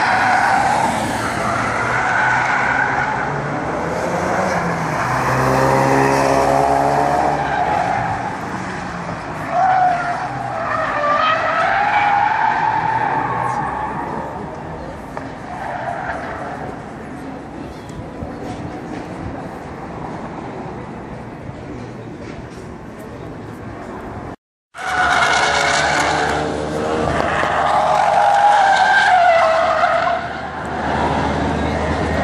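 A Ford Focus RS and a Ford Mustang drifting, with tyres squealing in long wavering screeches and engines revving hard. One engine revs up clearly about five seconds in. The sound cuts out briefly about three-quarters of the way through.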